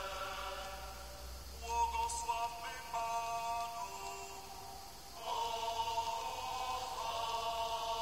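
Sung religious music: a slow chant-like melody of long held notes, with two brief breaks between phrases.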